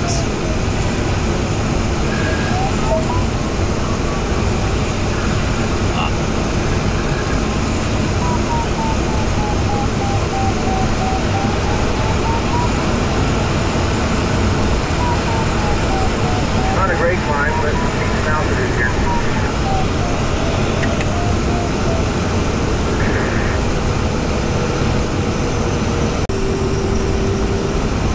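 Steady rush of air over the canopy of a Jantar Std. 2 fiberglass glider in flight, with the variometer beeping in a tone that slowly rises and falls in pitch as the climb rate changes. Near the end the beeps give way to a steadier, lower tone.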